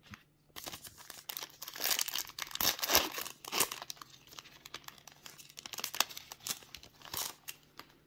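Foil wrapper of a Panini Diamond Kings baseball card pack being torn open and crinkled by hand, a run of crackles and rips lasting several seconds, loudest about two to three seconds in.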